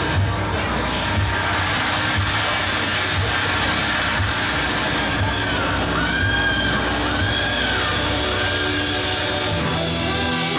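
Live rock band playing: drums keep a steady beat under bass and electric guitar. From about halfway in, a saxophone plays a run of held notes, each swelling and falling away.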